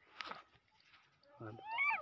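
A short high-pitched call near the end that rises and then falls in pitch.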